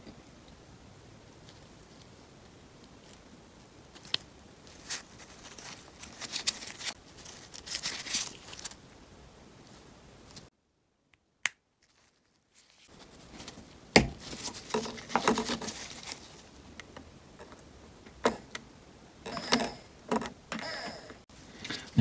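Faint clicks and rustles of gloved hands handling a small DC door-lock actuator motor and its plastic brush end cap as the cap is fitted back onto the motor. A sharp click about two-thirds of the way through is the loudest sound. About halfway through the sound drops out to dead silence for roughly two seconds.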